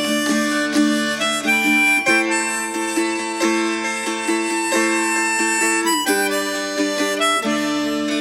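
Instrumental folk music: a harmonica plays a slow melody of long held notes over a plucked acoustic string accompaniment.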